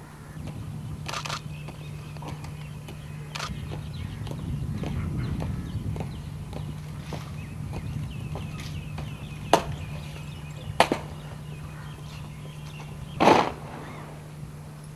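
Open-air ambience over a steady low hum, with a swell of low rumble around the middle and about five scattered sharp knocks, the loudest near the end.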